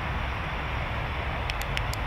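Steady outdoor background noise: a low rumble under an even hiss, with a few short clicks near the end.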